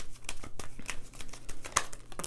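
A deck of tarot cards being handled and a card drawn from it: a run of quick papery flicks and taps.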